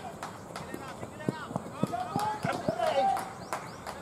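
Cricket players on the field shouting short calls to one another, loudest between about one and three seconds in, over scattered sharp clicks.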